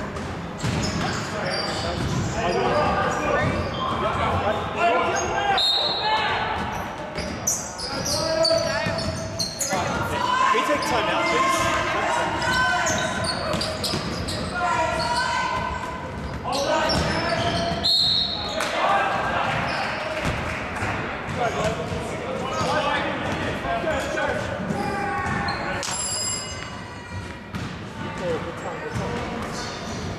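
Basketball being dribbled and bounced on a hardwood gym court, with short knocks throughout, under players' shouts and calls in a large hall.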